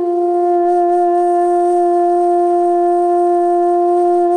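Carnatic bamboo flute holding one long, steady note.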